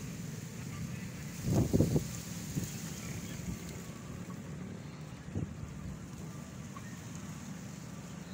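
Outdoor background of wind buffeting the phone's microphone over a steady low hum, with a brief louder sound about one and a half seconds in and a small one near the middle.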